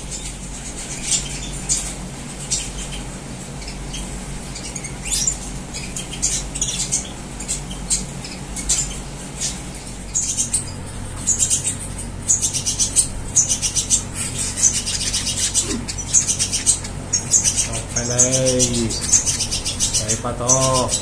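Small cage birds, canaries and other finches, chirping and singing in many short high notes, thin at first and becoming a busy, near-continuous chatter from about halfway.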